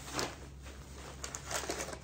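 Bubble wrap and paper packaging rustling and crinkling as hands push them aside in a cardboard box, in short bursts: one just after the start and several in the second half.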